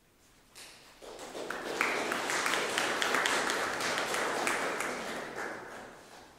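Audience applause: it starts about half a second in, builds to a steady patter of many hands clapping, and dies away near the end.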